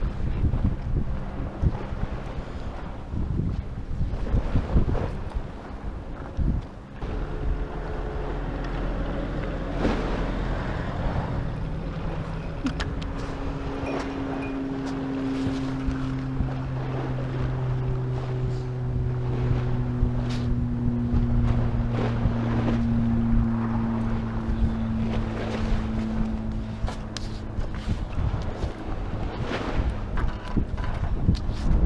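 Wind buffeting the camera microphone by the sea, with scattered knocks of handling. Through the middle a low steady hum runs along under the wind, its pitch sliding slowly down before it fades near the end.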